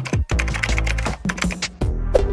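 Background music with a steady beat and sharp, clicky percussion.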